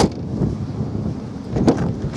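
Wind rumbling on the microphone outdoors, with a few sharp clicks, one right at the start and one near the end.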